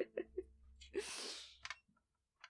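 A person's short, breathy burst of air about a second in, among faint clicks and murmurs; the sound cuts off to silence near the end.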